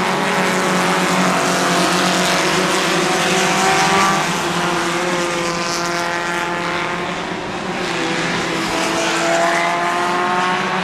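A pack of Hornet-class four-cylinder compact race cars running laps on a short oval. Several engine notes overlap, each rising and falling as the cars come off and into the turns. The sound dips briefly about seven seconds in, and one note climbs near the end.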